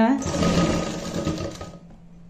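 Sewing machine stitching a zip onto suit fabric in one short run, stopping near the end; this run locks the stitching at the start of the seam to make it firm.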